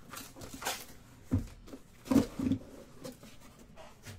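Cardboard shipping case being opened by hand: flaps scraping and rustling, then three dull thumps around the middle as the case is lifted off and the boxes inside knock on the table.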